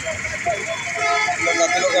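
People talking over steady street traffic noise.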